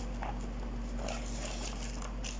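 A steady low electrical hum with faint, irregular light taps and rustles, as of small objects and cardboard being handled.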